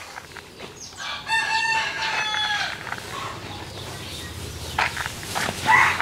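A rooster crowing once: one long call beginning about a second in and lasting about a second and a half.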